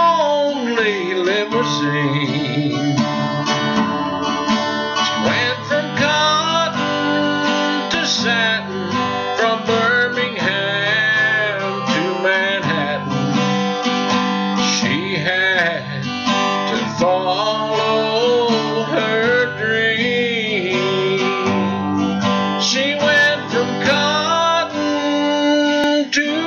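Acoustic guitar strummed steadily, accompanying a slow country song.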